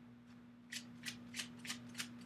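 Tarot cards being handled: a faint series of about five short, crisp card flicks, starting a little under a second in.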